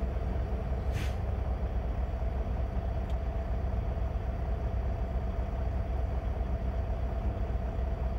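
Semi truck's diesel engine idling, a steady low drone with a steady hum over it, heard from inside the sleeper cab. A brief sharp sound cuts in about a second in.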